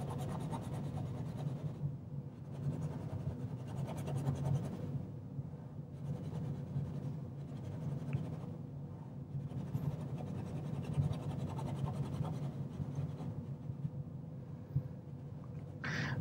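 Faint, irregular scratching of a paintbrush working oil paint onto canvas, over a low steady hum.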